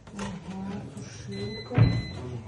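A kitchen cabinet drawer with a pull-out wire basket is pushed shut and closes with a single loud thud near the end. A steady high electronic beep sounds just before and during the thud.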